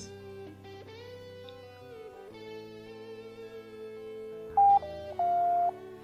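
Quiet background guitar music, then, about four and a half seconds in, two loud electronic beeps, the second lower and longer. The beeps are the Semi-Automatic Classification Plugin's alert in QGIS that the Landsat 8 band download has finished.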